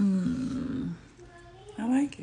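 A woman's wordless vocal sound: a loud, low held note for about a second, then a rising glide into a second short note near the end.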